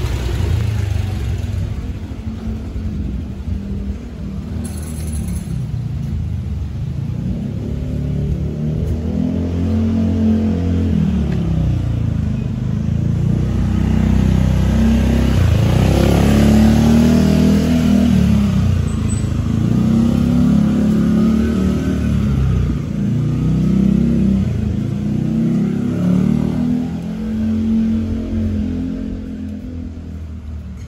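Small motor scooter engine running close by, its pitch rising and falling over and over as the throttle is opened and eased off.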